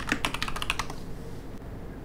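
Typing on a computer keyboard: a quick run of keystrokes that stops about a second in.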